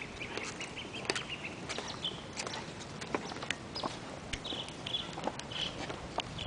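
Hard-soled footsteps clicking irregularly on stone paving as several people walk, with a bird chirping in short repeated calls from about two seconds in.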